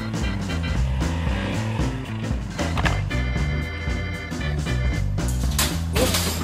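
Upbeat background music with a stepping bass line and steady beat, with a short click about three seconds in and a brief burst of noise just before the end.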